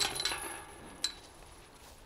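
Metal chains of a disc golf basket jingling and ringing out after a putted disc strikes them and drops into the basket, with one more light clink about a second in.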